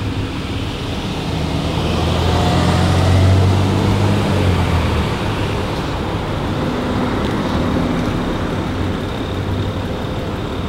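A motor vehicle passing on the street, its low engine hum swelling to a peak about three seconds in and fading by about five seconds, over a steady rush of traffic noise.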